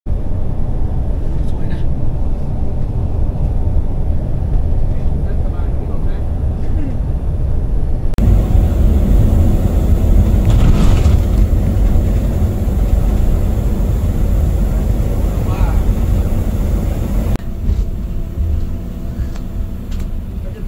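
Steady low rumble of road and engine noise inside a moving bus. It steps louder about eight seconds in and drops back near the end.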